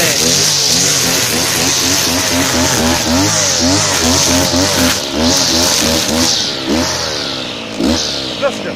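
Villager BC1900X two-stroke petrol brushcutter running with its nylon-line head cutting grass, the engine speed rising and falling again and again; it eases off near the end.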